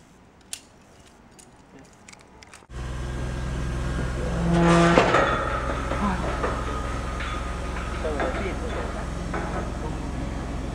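A few sharp metal clicks of zipline harness carabiners and clips being handled at the cable. From about three seconds in, a steady rumbling noise of wind and handling on a handheld microphone, with faint voices.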